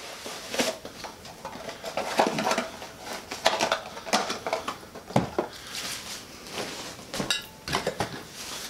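Handling noise from unpacking a retail pack of nylon drawstring ditty bags: a paper card backing and nylon fabric rustling and crinkling as the bags are pulled out, with a few sharper knocks.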